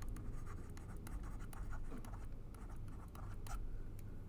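Faint stylus scratches and taps on a pen tablet as words are handwritten, over a steady low hum.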